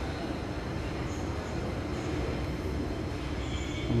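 Steady low rumble and hum of a shopping mall, even throughout with no distinct events.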